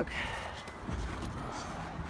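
Low steady background rumble with a faint hiss and a few faint ticks.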